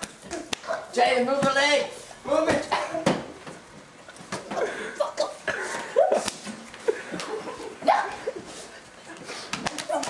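Young men shouting and laughing wordlessly while play-wrestling, with scattered slaps and thumps of bodies against the couch and floor.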